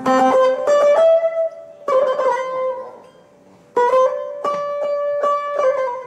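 Solo buzuq, a long-necked plucked lute, playing a melody of picked notes. The notes die away into a short quiet gap about three seconds in, and then a new phrase begins.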